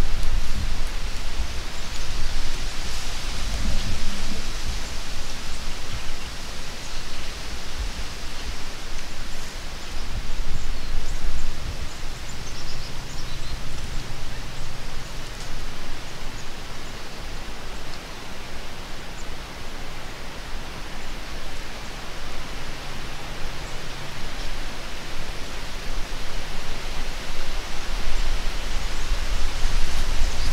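Steady rushing hiss of wind on the microphone, with a low rumble underneath and a rustle of dry woodland through it.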